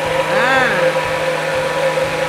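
Electric countertop blender running steadily at a constant pitch while oil is blended into a thick, creamy salad dressing base.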